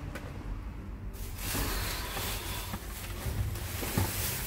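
Thin plastic trash bags rustling and crinkling as they are pulled about and rummaged through by hand, starting about a second in.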